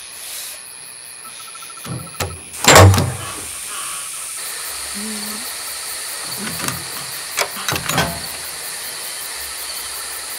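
Crickets chirring steadily at night, growing a little stronger about halfway through. About three seconds in comes a single loud, heavy thump, the loudest sound, and a few light knocks follow later.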